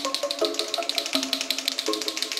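A white gel pen being shaken by hand, its contents rattling in a quick, even clicking, over background music with held notes.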